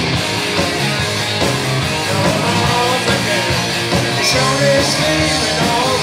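Live rock band playing loudly: electric guitars over bass and drums, with no vocals.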